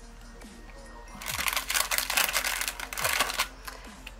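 Clear plastic packaging crinkling loudly for about two seconds as a small dropper bottle is pulled out of a plastic bag, starting about a second in. Background music with a deep, falling bass thump about once a second plays underneath.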